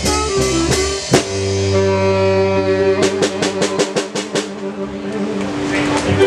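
Live rock band playing the close of a song: drum and cymbal hits, then a long held, ringing chord from about a second in with a fast run of drum hits over it about three seconds in, the chord cutting off near the end.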